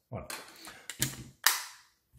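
Grip panel of a Sig Sauer 1911 Max Michel CO2 pistol being pressed onto the frame over the CO2 cartridge: a few sharp clicks, the loudest snap about one and a half seconds in as the panel locks into place.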